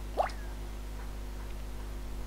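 A single quick blip that glides sharply upward in pitch, like a water drop, about a fifth of a second in. A steady low electrical hum runs underneath.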